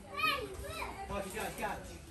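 A child's high-pitched call about a quarter second in, the loudest sound, followed by indistinct voices talking.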